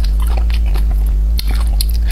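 Close-miked mouth sounds of biting and chewing cooked conch meat: irregular short wet clicks and smacks over a steady low hum.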